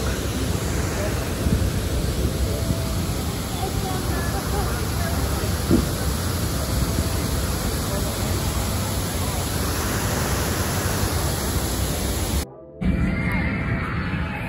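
Steady rushing noise of wind and rain on a phone microphone, strongest in the low end. It cuts out briefly near the end.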